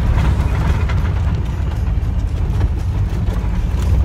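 Pickup truck driving over rough, potholed dirt road, heard from inside the cab: an uneven low rumble with scattered rattles and knocks as the truck goes through a big hole.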